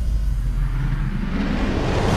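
Heavy rock soundtrack music in a quiet passage: a low bass rumble with the treble stripped away, the higher sound sweeping back in over the second half as the full guitar band returns.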